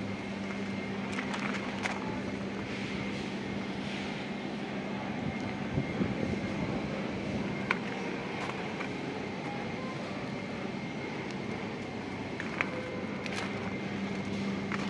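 Steady outdoor background noise with an even low hum running throughout, broken by a few short, sharp clicks.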